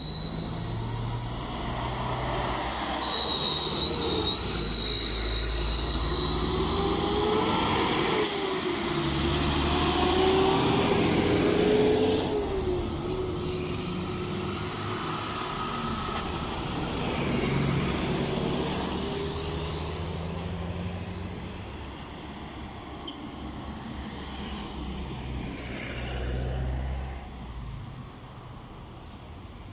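Road traffic passing close by: cars and heavy trucks drive past one after another. The low rumble swells and fades with each vehicle, with a high whine and engine tones that rise and fall. It is loudest about ten to twelve seconds in.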